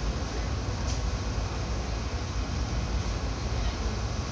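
Running noise of a moving train heard from inside a carriage: a steady low rumble with wheel and track noise, and a short click about a second in.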